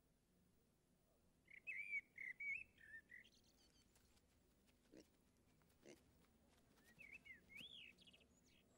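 Faint high whistled notes in two short runs, a wavering string of notes early on and, near the end, a few notes that finish in one that rises and falls. Two soft knocks fall between the runs.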